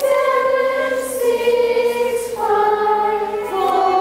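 A group of children singing together in unison, holding long notes and moving to a new note about two and a half seconds in and again near the end.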